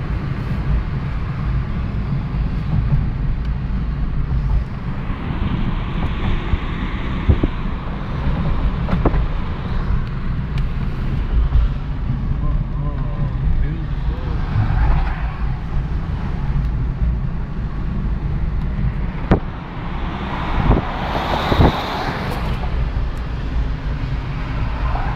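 Road noise inside a car cruising on a highway: a steady low rumble of engine and tyres, with a few brief swells of higher-pitched noise.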